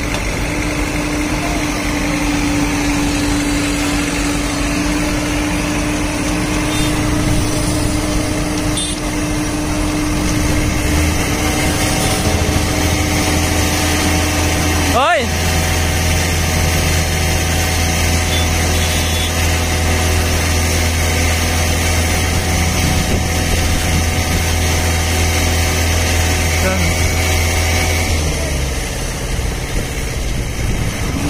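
Diesel engine of a JCB JS215LC tracked excavator running steadily, a continuous heavy hum. About halfway through the engine note shifts abruptly to a lower, stronger hum.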